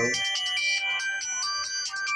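Smartphone ringtone for an incoming call: a melodic electronic tune of high notes changing pitch.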